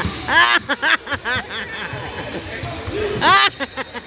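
Indoor basketball game sounds: voices of spectators and players echoing in the gym, with a basketball bouncing on the hardwood court in a quick series of bounces near the end.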